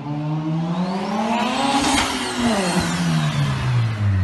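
A car engine revving hard as the car speeds past. Its pitch climbs as it approaches, peaks loudest about halfway through, then drops steeply as it moves away.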